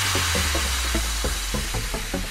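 UK bounce / scouse house dance track at a breakdown: the kick-drum beat has dropped out, and a hissing white-noise wash fades slowly over a held low bass note, with faint quick ticks beneath.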